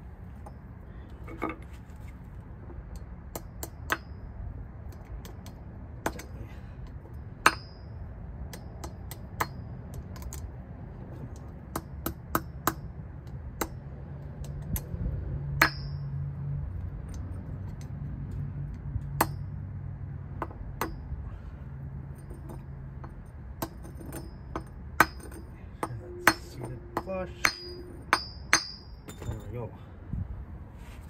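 Small hammer tapping a grease seal into a front wheel hub: a long run of sharp, irregular metallic taps, each with a short ring, coming closer together near the end.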